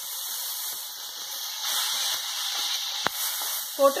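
Chopped tomatoes sizzling in a hot iron kadai, a steady steamy hiss as their juice hits the hot metal, with a single sharp click about three seconds in.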